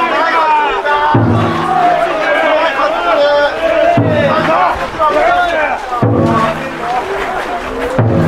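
Large taiko drum in a festival float struck in deep, ringing booms every two to three seconds, while the crowd of bearers chants and calls together over it.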